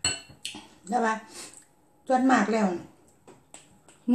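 A metal spoon clinks once against a glass bowl at the very start, ringing briefly, with a short scrape just after. A woman talks over the rest.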